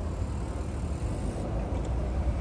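A low, steady rumble of outdoor background noise with no distinct events.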